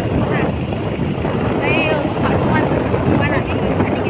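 Heavy wind rushing over a phone microphone on a moving motorcycle, steady throughout, with brief bits of a voice about halfway through and near the end.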